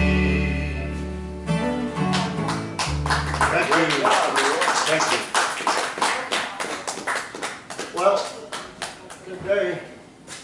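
Upright bass and acoustic guitar ending a song, the bass's low notes ringing for about three and a half seconds. Then an audience claps, with voices over the applause, dying down near the end.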